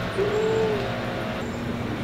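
A short closed-mouth "mmm" of enjoyment from a woman tasting food, one brief arched hum, over a steady low background drone.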